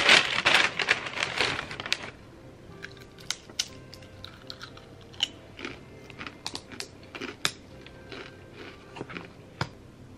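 Paper takeout bag crinkling and rustling loudly as it is pulled open for about two seconds, followed by scattered light clicks and taps.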